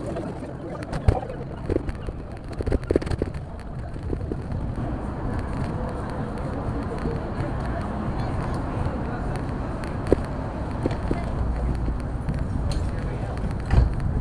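City street ambience: a steady rumble of traffic with the voices of people nearby and a few scattered short knocks.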